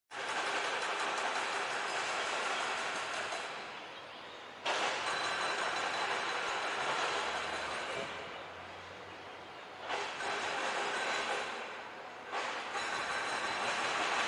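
Outdoor roadside ambience: a steady hiss-like noise with no distinct events, changing level abruptly three times.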